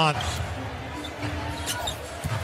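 A basketball being dribbled on a hardwood court, over the steady noise of the arena crowd.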